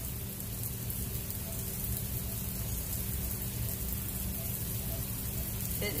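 Heavy rain falling outside, heard from indoors as a steady, even hiss.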